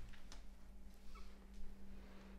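Quiet room tone with a steady low hum and a few faint ticks, and a brief faint high-pitched sound a little over a second in.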